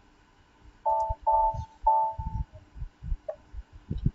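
Three short electronic beeps about half a second apart, the third held a little longer, over faint low thumps.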